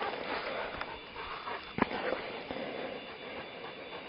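A dog panting after chasing a frisbee, its breathing heard as a steady noisy hiss, with a single sharp click about two seconds in.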